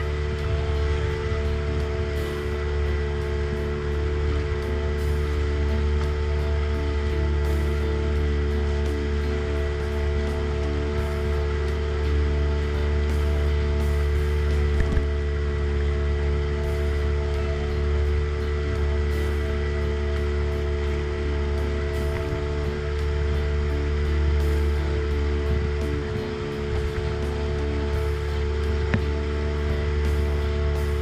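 Boat engine running steadily at constant speed, a continuous low drone with a fixed pitched hum.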